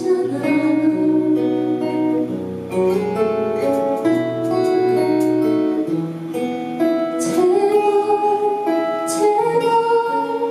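Live music: a woman sings into a handheld microphone over acoustic guitar accompaniment, holding long notes.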